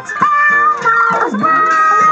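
Theme music with a high, squeaky voice holding long sung notes, its pitch sliding down and back up about halfway through.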